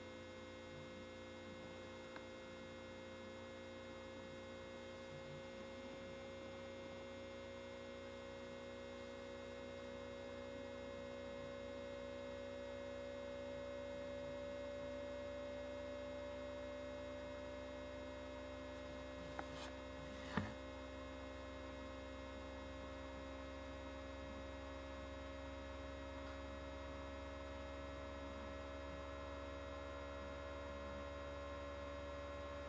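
Steady electrical hum whose main tones drift slowly upward in pitch, with two faint clicks about twenty seconds in.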